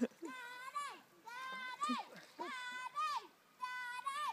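A child's voice calling out four times in drawn-out, high-pitched calls, each holding one pitch and then bending sharply at the end, like repeated shouts of encouragement.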